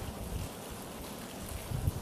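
A short pause between sentences of a lecture, with only faint steady background hiss of the room and microphone.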